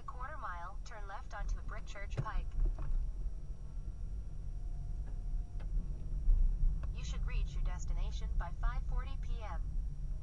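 Low, steady rumble of a car driving, heard from inside the cabin. A voice speaks over it twice, for about two seconds each time: once at the start and again in the second half.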